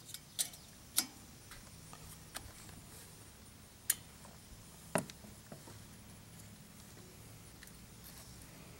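A handful of light, sharp clicks and knocks, about five spread over the first five seconds, from handling an inline spark tester, a spark plug wire and its alligator ground clip on a small engine. The engine is not running.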